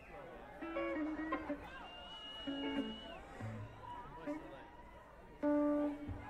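Scattered guitar notes picked one at a time over crowd noise at a live rock concert, before the band comes in; a high held whistle sounds about two seconds in, and a single note rings out loudest near the end.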